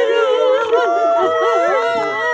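Several women crying aloud, their long wavering wails overlapping.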